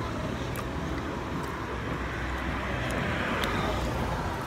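Steady outdoor background rumble, the kind tagged as vehicle noise, with a faint murmur of other voices. It swells slightly about three seconds in.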